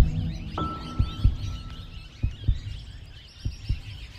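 A heartbeat sound effect in the edited soundtrack: low double thumps, one pair about every second, over a low hum. A steady high tone comes in about half a second in.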